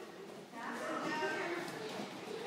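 Children's voices in a large hall, including a drawn-out vocal call that starts about half a second in.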